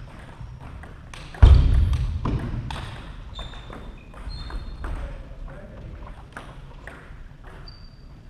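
Table tennis rally, the celluloid ball clicking sharply back and forth off bats and table, ending about a second and a half in with one loud thud. Scattered ball taps and brief high squeaks follow.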